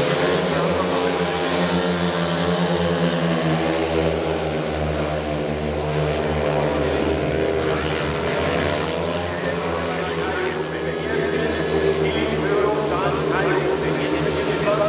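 Four speedway bikes' 500 cc single-cylinder methanol engines racing round the track together, their pitch rising and falling as the riders go through the bends and down the straights.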